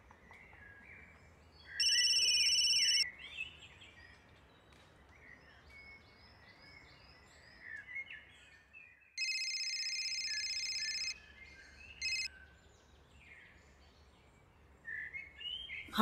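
Mobile phone call ringing as a steady high electronic tone. It sounds for about a second, then for about two seconds after a pause, then gives a short burst that cuts off as the call is answered. Birds chirp faintly between the rings.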